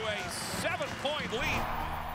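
Excited voice of a TV basketball play-by-play commentator calling a slam dunk over arena crowd noise. About one and a half seconds in, the voice stops and a steady low hum remains.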